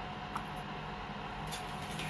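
Steady hum of a Jovy RE7500 BGA rework station running with its top heater on, heating a laptop motherboard toward reflow temperature, with a light click about a third of a second in and a hiss coming up near the end.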